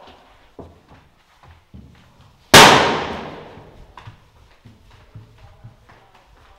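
A single loud, sharp bang about two and a half seconds in, echoing and dying away over about a second and a half, with faint footsteps around it.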